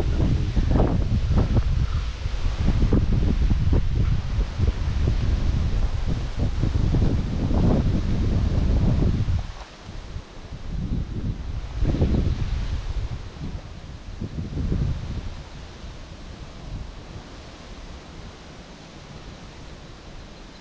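Wind buffeting the microphone with rustling leaves: heavy, gusty rumble for about the first half, then dropping to lighter gusts that fade out.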